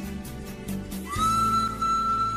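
Pan flute instrumental music: about a second in, a high pan-flute note enters with a slight upward scoop and is held steadily over a low sustained accompaniment.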